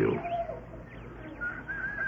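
A bird call: a faint short falling note near the start, then a long, high, wavering call beginning about one and a half seconds in.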